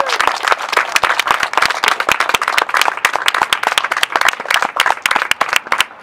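Audience applauding: a dense run of loud, close hand claps that thins out near the end.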